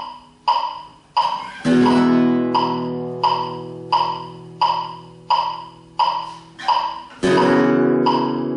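Flamenco guitar chords: one struck about a second and a half in and another near the end, each left to ring, over a metronome clicking steadily at 87 beats a minute.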